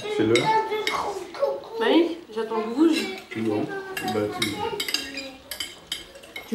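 Forks and knives clinking and scraping on china plates during a meal, in many short irregular clinks, with table conversation mixed in.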